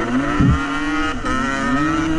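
Off-road vehicle engine running under throttle on a trail ride, its pitch dipping about half a second in and rising again near the end, with a low thump about half a second in.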